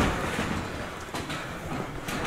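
Low background noise of a wrestling venue between commentary lines, fading slightly, with a couple of faint knocks.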